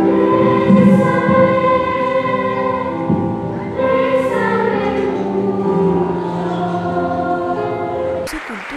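Children's choir singing with upright piano accompaniment, ending on long held notes.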